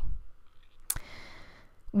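A single sharp click about a second in, followed by a brief faint scratchy hiss of an alcohol-ink Copic marker's nib stroking across blending cardstock.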